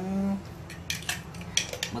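A spoon stirring in a glass jar of juice, clinking against the glass about eight times in quick, uneven succession.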